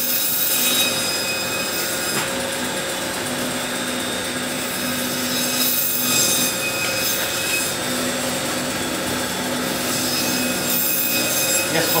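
Butcher's electric machine running steadily behind the counter, with a low hum that comes and goes irregularly and a few brief brighter surges.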